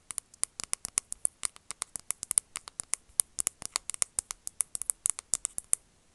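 Bristles of a paddle hairbrush flicked right against the microphone, a quick run of sharp clicks, about eight a second, that stops shortly before the end.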